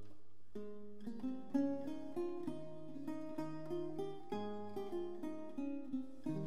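Historical guitar playing an instrumental interlude alone, with plucked notes and chords roughly two a second and no voice.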